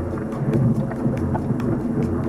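Whitewater rapids rushing: a steady, loud, low rumble of churning river water.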